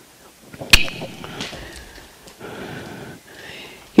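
A single sharp crack or knock about a second in, standing out over low murmur and room noise.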